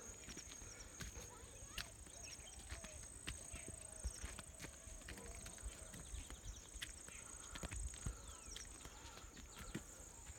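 Footsteps on a stone path, irregular faint knocks and scuffs, over a steady high-pitched buzz of insects.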